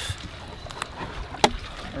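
A low, steady rumble of boat-side ambience with one sharp click about one and a half seconds in.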